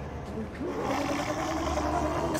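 A monster's drawn-out pitched cry from a film soundtrack. It starts about half a second in, rises, then holds steady over a low steady drone.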